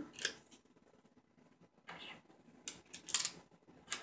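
A few light clicks and small metallic clinks from a bolt, washer and CD being handled and fitted into a plywood-and-rubber sanding jig, loudest about three seconds in with a brief high ring.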